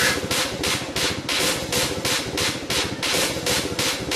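Electronic club dance music from a DJ mix: a fast, steady run of drum hits, about five a second, with no melody over it.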